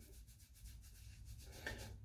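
Faint rubbing of fingers working through damp hair and over the scalp, massaging in hair tonic.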